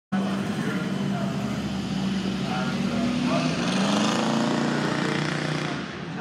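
Classic car engine running steadily as the car drives along the hill climb track, its note rising a little and growing loudest about four seconds in, then falling away near the end.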